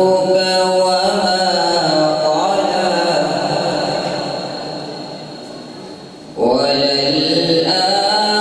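A young man's solo, unaccompanied Islamic devotional recitation through a microphone and PA, sung in long melismatic held notes. One long note fades away over several seconds before his voice comes back in strongly about six seconds in.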